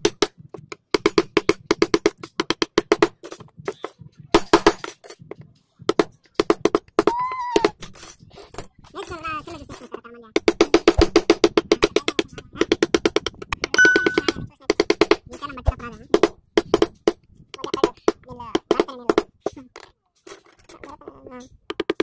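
Rapid mallet taps on a steel carving gouge cutting into a wooden door panel, about ten knocks a second, in bursts of a few seconds with short pauses between them.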